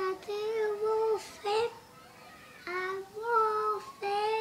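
A young boy singing in a high voice, holding long, steady notes in two phrases with a short pause between them.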